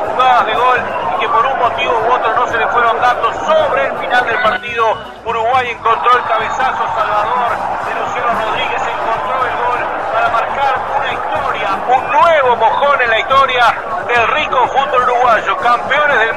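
Several voices talking and calling out over one another, too tangled to make out words, in a radio sports broadcast.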